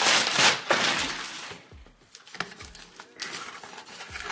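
Thin plastic packaging bag crinkling and rustling as it is handled, loudest in the first second and a half, then fading to softer handling noises with a few light taps.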